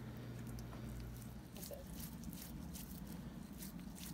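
Faint, quick little clicks of wet hands handling soft, sticky kneaded rice dough while shaping rice kubba, the clicks coming thicker from about a second and a half in.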